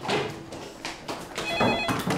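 Landline telephone ringing in repeated bursts of steady, slightly warbling high tones, one burst starting about one and a half seconds in. Between the bursts come several knocks and thumps of someone hurrying to answer it.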